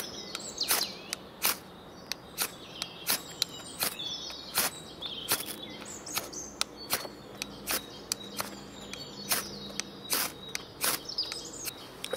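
Spine of a Fällkniven A1 Pro knife scraped repeatedly down a fire steel (ferro rod), about two quick strikes a second. The factory spine feels dull to its user for this, yet still throws sparks.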